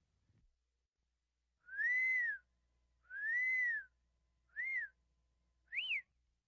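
Four high whistled tones, each rising and then falling in pitch: two long ones, then two short ones, the last climbing highest.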